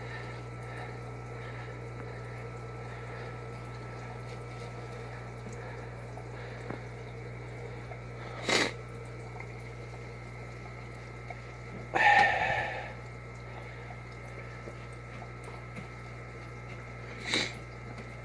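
Water draining through an aquarium gravel-vacuum siphon, a steady faint wash over a steady low hum. Three brief louder sounds break in: about halfway through, about two-thirds in, and near the end.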